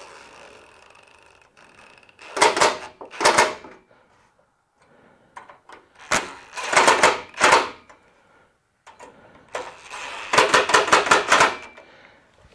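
Cordless impact driver hammering bolts tight in three bursts of rapid clatter, each lasting one to two seconds, with a softer whir near the start.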